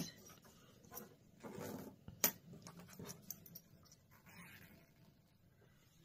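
Faint handling noises as two cut lengths of zipper tape are picked up and moved about on a cutting mat, with one brief sharp click about two seconds in.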